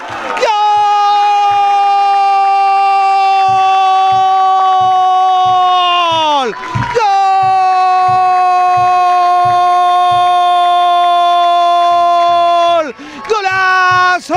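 A football commentator's drawn-out Spanish goal cry, "¡Gooool!", held on one slightly falling note for about six seconds, then, after a quick breath, held again for about six more.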